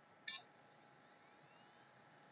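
Near silence: room tone with a faint steady hiss, broken by one faint, very short click about a third of a second in.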